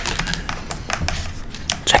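A quick run of sharp clicks and taps right at the microphone: chopsticks and plastic food containers being handled.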